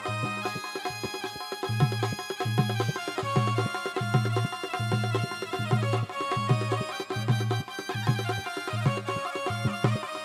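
Instrumental interlude of a Hindi devotional bhajan played on a Roland XPS-30 keyboard: held melody and chord tones over a steady rhythm, with bass notes pulsing about twice a second.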